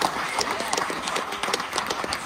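Audience applauding, dense irregular hand claps, with scattered cheers and voices among them.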